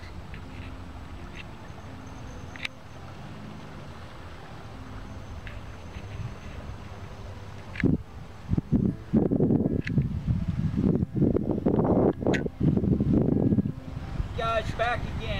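Wind buffeting the microphone in loud, irregular gusts from about eight seconds in. Before that there is a faint, steady low hum with a few small clicks.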